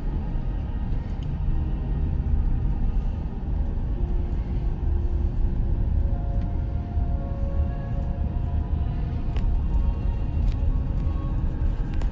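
Low, steady rumble of a car driving over a packed-sand beach road, heard from inside the cabin, under soft, slow background music with a few long held notes.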